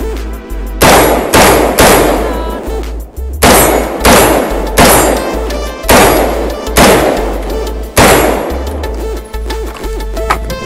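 About nine shots from an AR-style semi-automatic rifle, the MGS Firearms Citizen, fired at an uneven pace with half a second to a second and a half between them. Each shot rings off briefly. Background music with a steady beat runs underneath.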